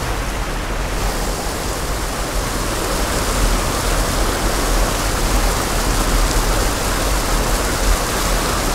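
Creek water pouring over the lip of a small concrete diversion dam: a loud, steady rush of falling water.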